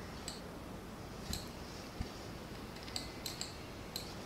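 A handful of faint, irregularly spaced clicks from a computer mouse as the 3D view is zoomed and turned, over a low room hiss.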